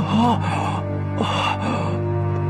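A tense, sustained film score with a person gasping and crying out in distress twice: once at the very start and again a little over a second in.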